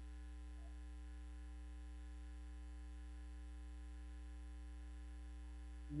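Steady, faint electrical mains hum.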